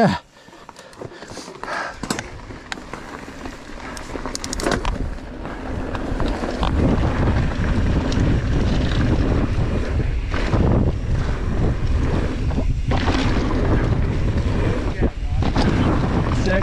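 Wind buffeting the camera microphone on a mountain bike descending a dirt trail. Light clicks and rattles come first, then a loud, steady rumble of wind builds from about six seconds in as the bike picks up speed.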